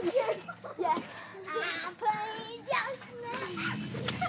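Faint children's voices talking and calling out while they play, with no clear words.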